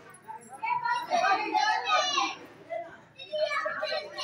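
A group of children shouting and chattering, with high, excited calls loudest between about one and two and a half seconds in.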